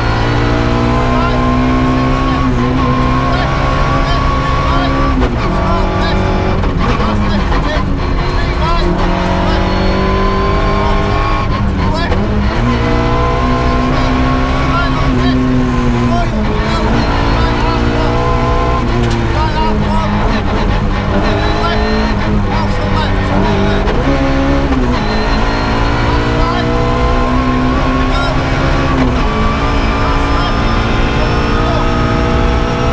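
Ford Puma 1.6 rally car's four-cylinder engine heard loud from inside the cabin, revving hard at full stage pace. Its pitch climbs and then drops sharply at each gear change, several times over.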